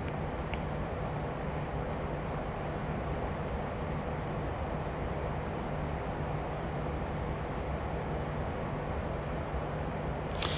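Steady low background hum with a faint hiss, unchanging throughout, with no distinct sound events.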